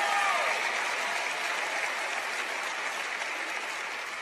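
Audience applauding, the clapping slowly dying away.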